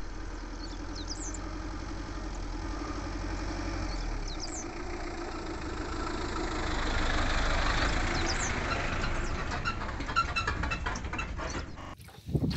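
Hyundai H-1 van towing a boat trailer drives up a dirt road and passes close by: a steady engine hum and the hiss of tyres on the dirt grow louder to a peak about seven seconds in, then ease off, with light crunching clicks near the end. A few short bird chirps sound above it.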